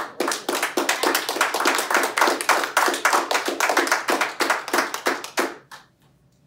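A small group of people clapping their hands, a fast irregular patter of many claps that stops abruptly shortly before the end.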